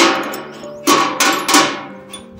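Four sharp metal-on-metal strikes on the power tiller, each ringing briefly: one at the start, then three close together from about a second in, with background music under them.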